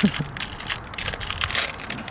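Foil packaging pouch crinkling as hands squeeze and pull it open, a dense irregular run of crackles.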